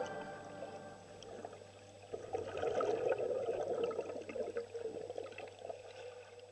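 Faint gurgling and bubbling water with small scattered clicks. It swells about two seconds in, then fades away near the end.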